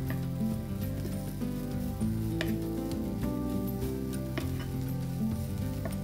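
Wooden spatula stirring couscous and vegetables in a hot frying pan, with a light sizzle and a few sharp scrapes against the pan, over steady background music.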